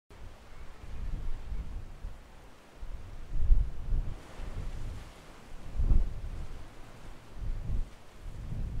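Wind buffeting the microphone in irregular low gusts, strongest about three and a half and six seconds in.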